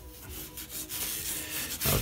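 Sharpie permanent marker drawn across watercolour paper: several short, scratchy strokes of the felt tip on the paper.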